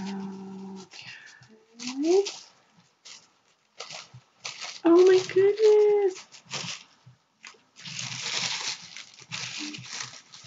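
Packaging being unwrapped, rustling and crinkling in several bursts. Between the bursts a woman hums and makes short wordless vocal sounds; the longest and loudest comes about five seconds in.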